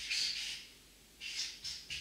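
Felt-tip marker squeaking across flip chart paper in short strokes as a box and the letters "CEO" are drawn: one longer stroke at the start, a pause of about half a second, then a quick run of shorter strokes.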